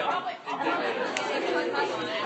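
Several people talking at once: overlapping chatter of a group of students in a large room.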